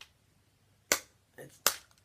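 Two sharp clicks, about three-quarters of a second apart, with a softer tap between them, from a finger flicking the plastic arrow of a BeanBoozled cardboard game spinner.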